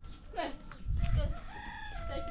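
A rooster crowing: a long, held, slightly arching call in the second half, carrying on past the end, after a short falling call about half a second in. Low rumbling bumps are loudest about a second in.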